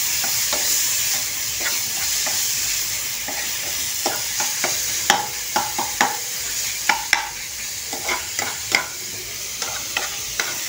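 Chopped tomatoes and onion sizzling in oil in a steel pan while a metal spoon stirs them, scraping and clicking against the pan. The clicks come more often in the second half.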